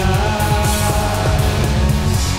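Heavy rock music with electric guitar: a loud, dense mix with a driving low end and a sustained melodic line held over it.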